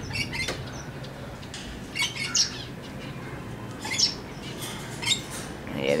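Male Alexandrine parakeet giving about five short, harsh squawks at irregular intervals, a sign of agitation, as the bird gets very angry. A steady low hum runs underneath.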